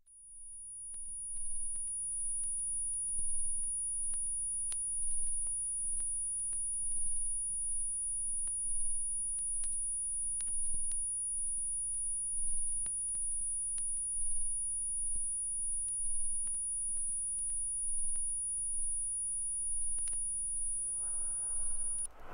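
Steady recording noise with no speech: a constant high-pitched whine over a low rumble and hum, with faint scattered clicks. It starts abruptly out of dead silence.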